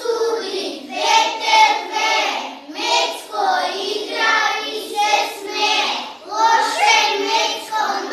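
A group of young children singing a song together in unison, in short phrases with brief breaths between them.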